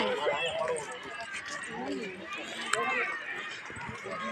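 People talking around the microphone, with a child's voice among them, in a crowd of visitors.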